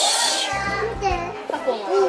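Young children's high voices chattering and exclaiming over background music with low bass notes, with a short hiss at the very start.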